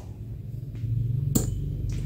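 A single sharp click about a second and a half in, from a relay on a 4-channel relay module switching off as relay two releases and cuts power to its solenoid valve. Under it runs a low steady hum.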